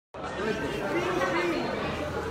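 People talking; the speech is indistinct.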